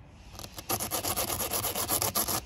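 A fast rasping rub, about ten strokes a second, builds from about half a second in: the flexible repair plug and the repair tools scrub against the tire rubber at the puncture as the plug is worked into the hole.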